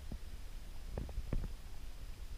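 Footsteps of a walker on a dirt path: three soft thuds, the last two close together, over a low steady rumble on the microphone.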